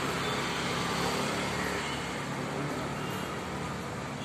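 Steady hum of road traffic, with no sharp or separate sounds standing out.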